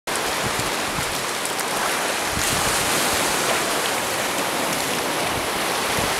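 Steady rush of shallow water: small surf waves washing over sand where a muddy stream runs out into the sea.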